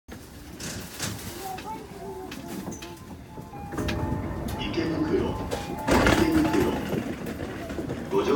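Indistinct voices in a busy train station, with a few sharp knocks, the loudest about six seconds in.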